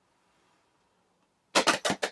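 Near silence for about a second and a half, then a quick run of sharp clicks, about five in half a second.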